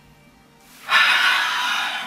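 A person's loud, breathy sigh that starts about a second in and trails off.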